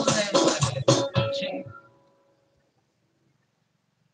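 Yamaha electronic keyboard playing the close of a song over a drum beat, which stops about a second and a half in; a final held note fades out soon after, leaving near silence.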